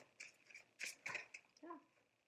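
Tarot cards being shuffled by hand: a few faint card clicks and slaps, with a brief short voiced sound near the end.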